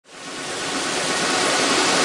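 A steady, even hiss like rushing water or static, fading in from silence over the first half second.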